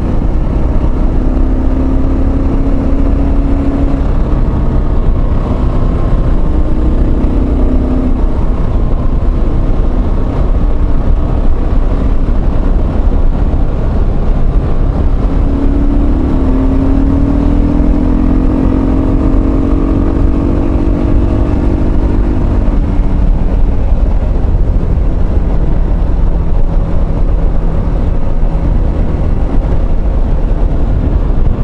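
A motorcycle riding at road speed, heard through a microphone inside the rider's helmet: a heavy, steady wind rumble with the engine's hum under it. About halfway through, the engine's note rises as the bike speeds up.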